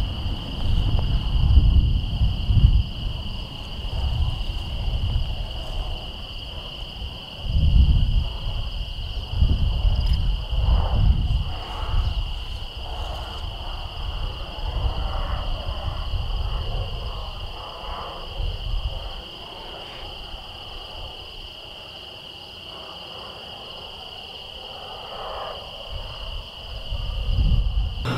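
Outdoor evening ambience: insects trilling steadily at a high pitch, with irregular gusts of wind rumbling on the microphone.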